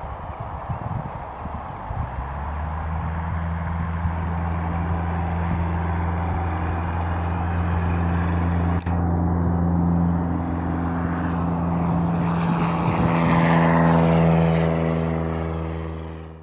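Cessna 172 Skyhawk's four-cylinder piston engine and propeller at full takeoff power, a steady low drone that builds and grows louder as the plane rolls down the runway close by and lifts off. Rough noise for the first two seconds before the engine note comes up.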